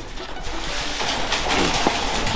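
Large rusty steel sheets scraping against one another and flexing as they are pulled and shuffled by hand. The noise builds from about half a second in, and the flexing sheet gives a wavering wobble near the end.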